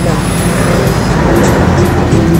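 Street traffic noise, a steady low rumble. Music with held notes comes in about a second in.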